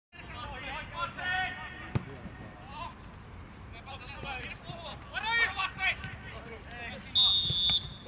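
Players shouting and calling to each other across a football pitch, with one sharp kick of the ball about two seconds in. Near the end a referee's whistle gives one short, steady, high blast, the loudest sound.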